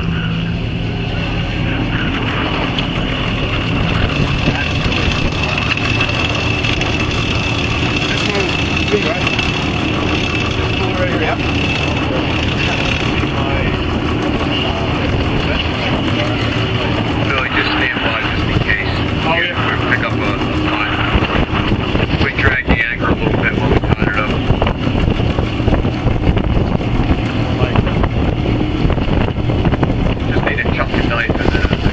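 A party boat's engine running steadily while the anchor line is hauled in at the bow winch. Wind rumbles on the microphone in the second half.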